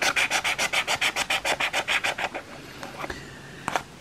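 Scratch-off lottery ticket being scratched in quick back-and-forth strokes, about six a second, the scraping stopping a little over two seconds in, followed by a faint tap or two.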